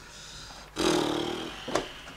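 A man's exasperated groan without words, lasting under a second and starting a little before the middle, over the rustle of handled paper, with a short tap near the end.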